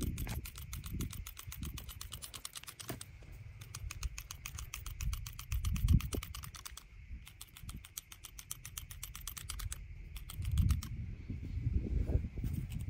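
Manual hand-squeeze hair clippers cutting hair, the blades clicking rapidly at several strokes a second, with brief pauses about seven and ten seconds in. A low thump comes about six seconds in.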